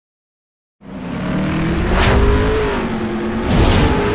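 Car engine revving sound effect that starts suddenly out of silence about a second in, with two whooshes sweeping past, one near the middle and one near the end.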